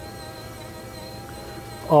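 Electric windshield sun visor motor running with a faint, steady high whine that stops about one and a half seconds in, over a low steady hum.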